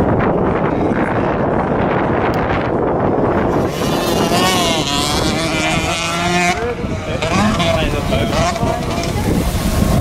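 Motocross bikes' engines revving and changing pitch as they ride round the track, under heavy wind buffeting the microphone. The engine pitch is clearest in the middle, rising and falling with the throttle.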